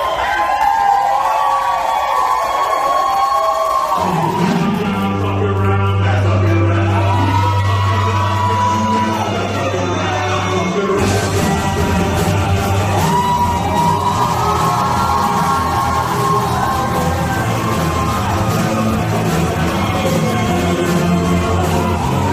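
Music playing for a stage dance act. A gliding melody line carries from the start, a low bass enters about four seconds in, and the sound turns brighter and fuller from about eleven seconds in.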